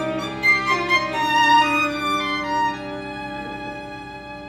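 String quartet of violins, viola and cello playing a contemporary fugue with bowed notes, several lines moving through changing pitches, then held notes growing quieter over the second half.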